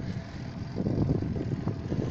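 Low, uneven rumble of a road bike riding at about 15 km/h on asphalt: wind on the microphone mixed with tyre and road noise.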